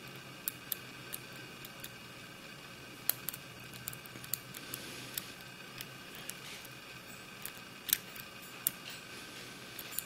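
Lock pick and tension wrench working the pins of an American Lock barrel padlock during single-pin picking: faint small metallic clicks and scrapes at irregular intervals, with sharper clicks about three seconds in and near eight seconds.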